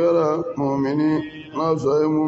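A man's voice chanting a religious recitation in long, held melodic phrases, three of them, each sliding up in pitch at its start before holding its note.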